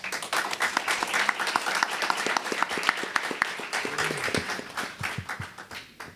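Audience applauding with dense clapping at the end of a talk. The clapping thins out and stops near the end.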